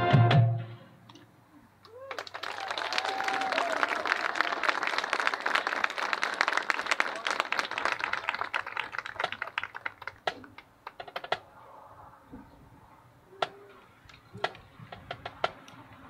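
A marching band's music ends with a held chord, and after a short pause the audience applauds for about eight seconds, thinning out to a few scattered claps.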